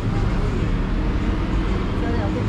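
A steady low background rumble with no distinct single event in it.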